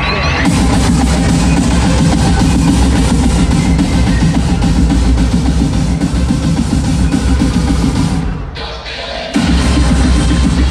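Loud live concert music over an arena sound system, with a heavy drum and bass beat, recorded from within the crowd. It drops away for about a second near the end, then kicks back in suddenly.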